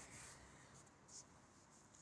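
Near silence: room tone between sentences, with one faint, brief rustle just past a second in.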